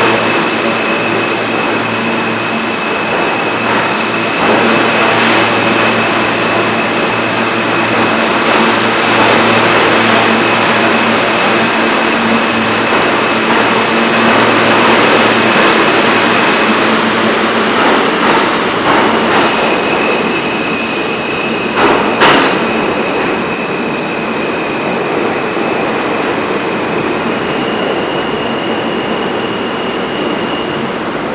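An R160 New York City subway train runs past along the platform: a steady rumble of wheels on rail with a high steady whine over it. A sharp clank comes about two-thirds of the way through, and a higher tone sets in near the end.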